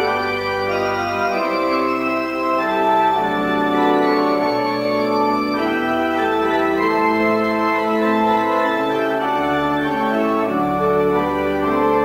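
Organ playing a slow prelude: held chords that change every second or two over a deep bass line.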